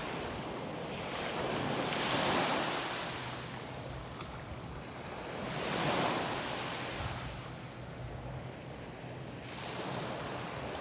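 Small waves lapping and washing up a sandy shore. The wash swells and fades every three to four seconds.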